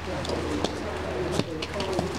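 Show pigeons (American Show Racers) cooing, low and wavering, with people talking in the background.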